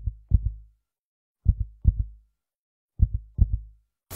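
Heartbeat sound effect: three double thumps, lub-dub, about a second and a half apart, with silence between them.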